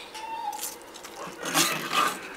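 Metal serving tongs scraping and digging into a baked noodle casserole in a ceramic baking dish, with the crunch of its crispy breadcrumb top, loudest in the last half second.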